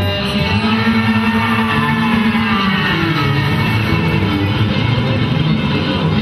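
Amateur rock band playing live: a boy singing into a microphone over electric guitar and an electronic drum kit.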